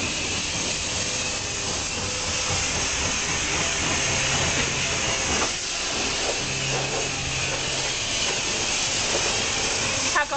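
Car wash pressure-washer lance spraying water onto a car: a steady hiss of spray, with a faint low hum underneath.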